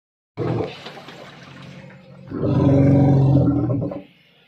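Elephant calf trapped in a well, calling: a short loud cry just after the start, then a long, steady bellow through the second half.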